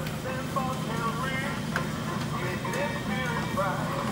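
Steady low hum with faint distant voices and music, and a light click or two from handling the controller's cover.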